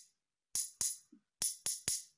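Two metal spoons struck together, tapping out a rhythm pattern: two quick clicks, a short pause, then three more, each with a brief high metallic ring.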